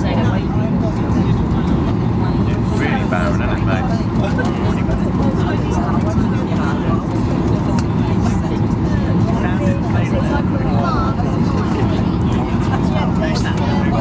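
Steady roar inside a jet airliner's cabin on final approach, engine and airflow noise with no change in level, with indistinct passenger chatter over it.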